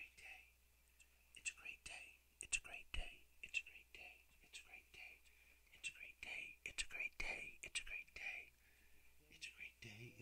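Faint whispering voice, in short breathy phrases with sharp hissing s sounds.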